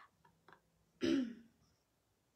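A woman clears her throat once, briefly, about a second in.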